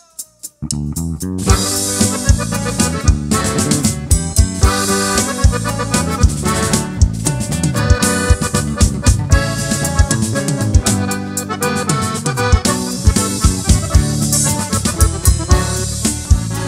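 Norteño band playing an instrumental intro: button accordion leading over electric bass and drum kit with a steady dance beat. It opens with a few quick clicks before the full band comes in about half a second in.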